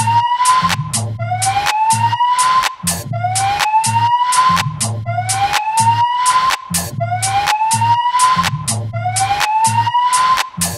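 Electronic dance track: a synth tone that slides upward, repeated about every second and a half, over a pulsing bass line and crisp percussion hits.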